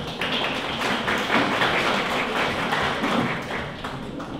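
Audience clapping: a dense patter of hand claps that swells just after the start and fades out near the end.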